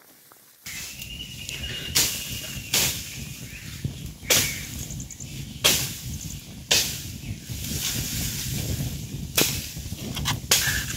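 Open fire of dry grass and twigs burning with a steady low rush, broken by sharp loud pops about every one to one and a half seconds. It starts suddenly about half a second in.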